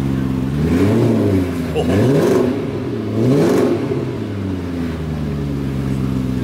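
V12 engine of a BMW Alpina 7 Series (E38) with quad exhaust, just cold-started, revved in three short blips that each rise and fall, then settling back to a steady idle.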